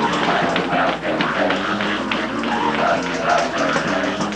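Live gospel praise-break music: a boy singing into a microphone, with other voices, over quick, steady hits of tambourines and a hand drum.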